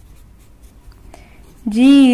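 Faint scratching of a pen writing on paper, with a voice starting to speak near the end.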